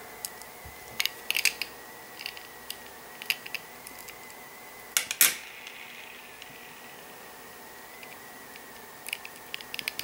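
Scattered light clicks and taps of a small screw and screwdriver being handled on a plastic model train car, with a sharper pair of clicks about five seconds in.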